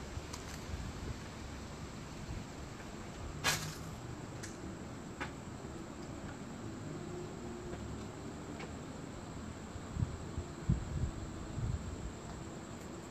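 Crickets chirping steadily. A sharp click comes about three and a half seconds in, and a few dull thumps near the end.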